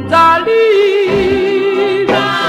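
1961 doo-wop single: a female vocal group singing in harmony, with one long, wavering held note starting about half a second in.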